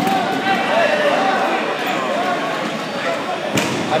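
Players calling out in a reverberant gymnasium during a dodgeball game, a din of distant voices, with a sharp thump near the end, typical of a dodgeball striking a player or the floor.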